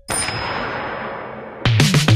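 Electronic background music broken by a transition effect: a sudden noisy crash with a thin high ring that fades away over about a second and a half. Near the end the music comes back in with falling pitch sweeps.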